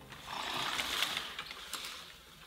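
A breathy horse-like snort or blow, as voiced for a stage horse puppet. It swells about a third of a second in and ends with a brief fluttering rattle before fading.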